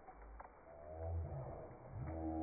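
A dog growling in play, a low drawn-out growl that starts about half a second in and grows louder.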